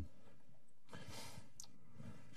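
A man's faint breath into a podium microphone during a pause, about a second in, followed by a small click.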